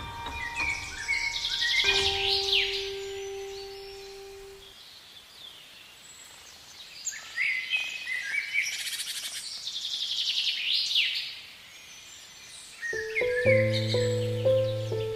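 Songbirds singing in quick rising and falling chirps and trills, in two spells, while the last held piano note dies away about five seconds in. Piano music starts again near the end.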